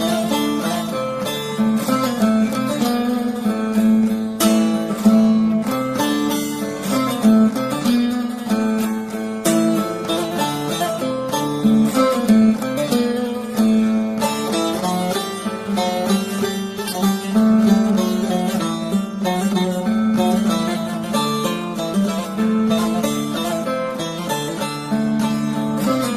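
Bağlama, the Turkish long-necked lute, playing an instrumental passage of a folk tune: a plucked melody over a steady low drone.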